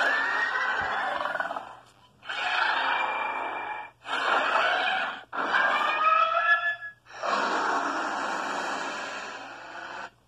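A person voicing a monster's roar with the mouth: five breathy, raspy screeches in a row, each one to two seconds long, the fourth with whistle-like gliding tones. It is an imitation of King Ghidorah.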